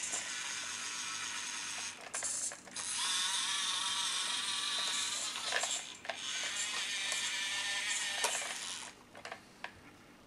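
Electric drive motor and gearbox of a Siku Control 1:32 Deutz-Fahr Agrotron X720 RC tractor whining as it drives, with a few brief breaks as it stops and changes direction. The whine cuts out about nine seconds in, leaving a few faint ticks.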